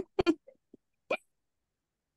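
A woman laughing briefly: a few short bursts of laughter in the first second or so, with one last breathy burst a little after.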